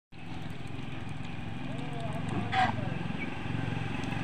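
A steady low motor hum, with domestic geese calling: one short, harsh call about two and a half seconds in, and fainter calls around it.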